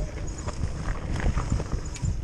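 Mountain bike riding down a dirt singletrack: tyres rolling over dirt and roots, with irregular knocks and rattles from the bike over the bumps.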